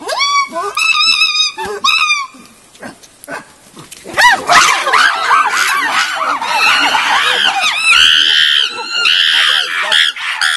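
Chimpanzees calling: a few short rising-and-falling calls in the first two seconds, then from about four seconds a loud chorus of overlapping screams from several animals, shrillest near the end. The screaming is the sound of a squabble in the group, with one chimp seeking the alpha male's support.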